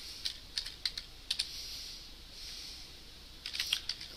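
Typing on a computer keyboard: scattered single keystrokes in the first second or so, then a quick run of keys near the end.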